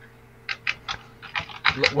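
A few short clicks in the first second, then a man's voice starting to speak near the end, over a faint steady hum.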